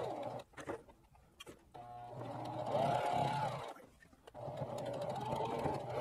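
Singer Heavy Duty electric sewing machine stitching a seam through T-shirt knit, running in three spells with short stops between them. During the middle spell its pitch rises and falls as the speed changes, and a few faint clicks come in the first pause.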